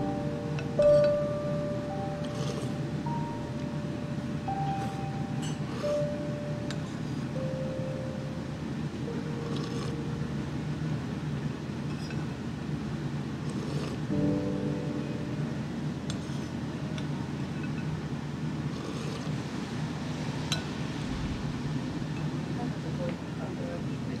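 A ceramic soup spoon clinking now and then against a ceramic ramen bowl while the last of the soup is scooped up. Under it run a steady low hum and a simple melody of background music, which fades out partway through and returns briefly around the middle.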